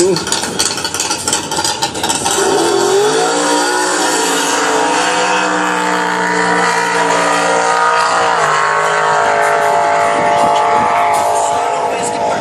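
Nitrous-boosted, twin-carburettor tube-chassis drag car making a quarter-mile run at full power. The engine note rises steeply about two and a half seconds in, holds high and loud with a brief dip in pitch about eight and a half seconds in, then fades toward the end.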